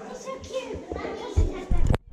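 Children's voices chattering, with a few loud low thumps near the end.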